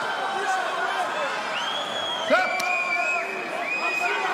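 Arena crowd noise at a kickboxing bout, with loud individual shouts and calls from the crowd or corners, and one sharp smack about two and a half seconds in.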